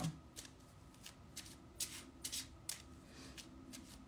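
A deck of oracle cards being shuffled hand over hand: soft, irregular card flicks and slides, about two a second.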